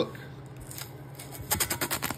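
Green masking tape being peeled off a metal intake manifold's port face: quiet at first, then a rapid crackling rip as the tape pulls away near the end.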